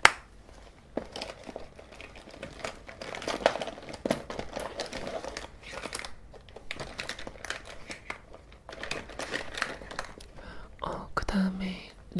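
Close-miked crinkling and rustling of cosmetics and their packaging being handled, with many small irregular clicks. A single sharp click comes right at the start.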